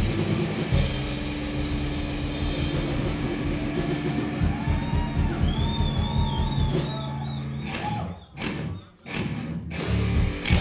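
Live rock band playing an instrumental passage: distorted electric guitar, bass and drum kit, with a bending, wavering guitar note about halfway through. Near the end the band plays a few sharp stop hits with brief gaps between them.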